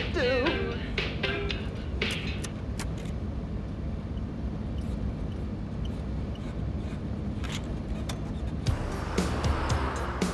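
A car driving along a road: steady low engine and road rumble with music over it. About nine seconds in, a louder rush of noise swells up.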